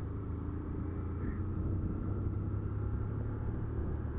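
Motorcycle engine running steadily while riding at cruising speed, a low even hum with road noise.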